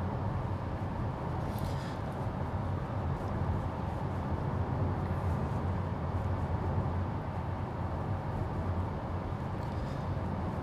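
Steady road and tyre noise heard inside the cabin of a Tesla Model 3 Performance, an electric car on 20-inch wheels, cruising at about 55 mph. It is a constant rumble, mostly low in pitch, with no engine note.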